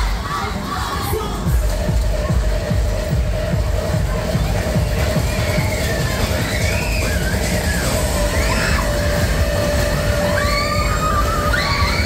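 Loud bass-heavy music from a waltzer ride's sound system, with riders screaming and shouting as the cars spin. The screams rise and fall in several calls around the middle and again near the end.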